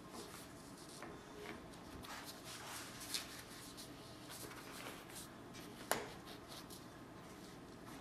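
Faint rustling and scraping of convertible-top fabric and padding being handled and worked through with a sharp pointed tool, with a sharp click about six seconds in and a smaller one about three seconds in.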